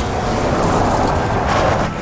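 A car braking hard, its tyres skidding over a dusty surface: a loud, steady rush of noise that eases off right at the end.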